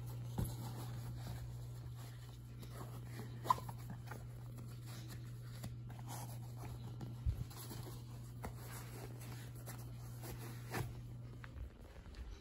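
Quiet handling sounds of running shoes being pulled on: soft rustles of the shoe fabric and laces with a few light taps and clicks, over a steady low hum.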